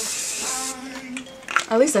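Aerosol hairspray sprayed in one hissing burst that stops about three quarters of a second in. A woman's voice follows near the end.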